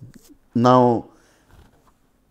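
Speech only: a man says a single drawn-out "Now", its pitch falling.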